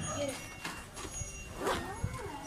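Indistinct voices of people nearby, in two short stretches, with a few light knocks in between.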